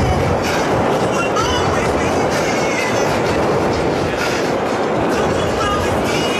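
Dense festival crowd noise, with many overlapping shouts, whoops and whistles, over dance music whose bass has thinned out.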